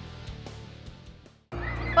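The tail of background music fading out to a moment of silence about a second and a half in, then a steady low hum starting suddenly.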